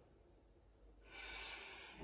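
A woman's audible breath, a soft rush lasting about a second that starts about a second in, as she comes up out of a kneeling backbend in time with her breathing.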